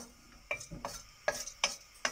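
A spoon stirs and scrapes dry-roasting dals, coriander seeds and dry red chillies around a small metal pan over a low flame, in about five quick scraping strokes.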